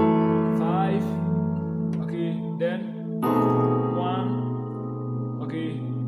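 Digital keyboard on a piano sound playing sustained chords of a 5-1-4 progression in B major. One chord is struck at the start and held, then a second chord with a lower bass note is struck about three seconds in and left to ring.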